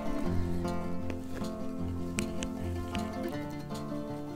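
Background music: an instrumental track of steady held notes that change in steps.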